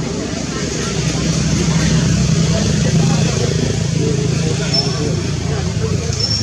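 A motor vehicle's low rumble, swelling through the middle and easing again, as it passes close by, with indistinct voices in the background.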